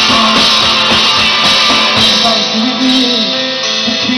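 Live rock band playing: electric guitar and drum kit, with drum hits through the first half and held notes from about midway.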